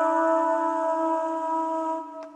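A single sustained chord, likely from a guitar, struck just before and ringing on with steady pitch, beginning to fade near the end.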